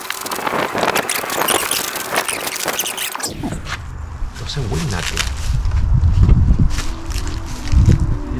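Plastic wrapping crinkling and rustling as it is pulled off RC jet parts for about the first three seconds. After that come low, murmured voices.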